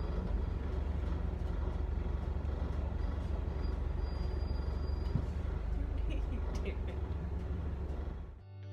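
Steady low rumble of a moving vehicle.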